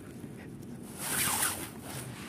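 Rustling handling noise from a phone camera carried while walking, with one louder, short rasping swish about a second in.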